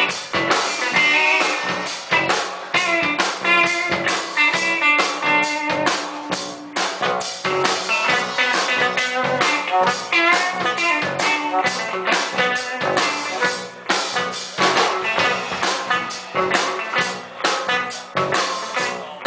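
Live band playing an instrumental break without vocals: a drum kit keeps a steady beat under electric bass and guitar.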